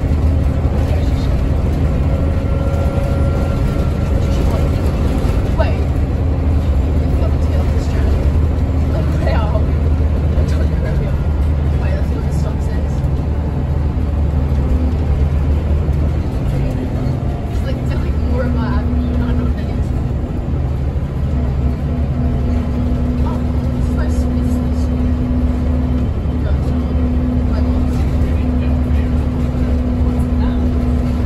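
Scania DC9 230 five-cylinder diesel engine of a Scania L94UB city bus, heard from inside the passenger cabin, running steadily with its low drone. The engine note changes about halfway through, with the deepest hum dropping away and a higher steady tone taking over.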